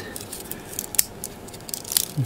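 Small plastic model-kit parts clicking and scraping against each other as they are worked into place by hand, with one sharp click about a second in.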